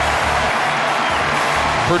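Background music with a low bass line that changes note every half second or so, under a steady wash of higher sound.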